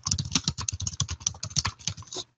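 Typing on a computer keyboard: a quick, even run of keystrokes, about ten a second, as a short phrase is typed.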